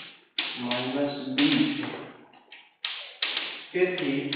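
Chalk tapping and knocking on a chalkboard while writing, a quick run of short sharp taps.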